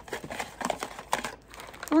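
Packaging crinkling and rustling as a small pink cardboard product box is handled and closed, a run of irregular crackles and scrapes.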